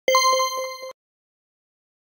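Bell sound effect: a small bell rung rapidly several times for just under a second, then cut off suddenly, going with a subscribe button's notification-bell icon being clicked.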